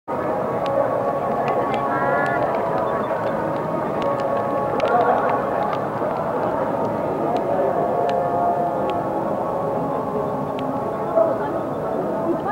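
Crowd chatter in a busy pit garage: many voices talking at once, with scattered short, sharp clicks throughout.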